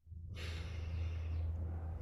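A person breathing out in a long sigh-like exhale, the breathy hiss strongest for about a second and then thinning. A steady low hum sits underneath.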